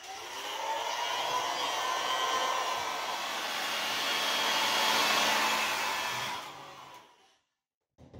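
Hair dryer blowing steadily, drying acrylic paint on the rock between coats; it fades out about seven seconds in.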